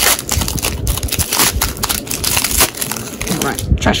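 Foil Pokémon booster pack wrapper being torn open and crinkled by hand: a dense, continuous run of crackling and rustling.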